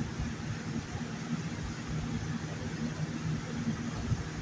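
A steady low hum with a faint hiss over it, unchanging and with no distinct events: background room noise.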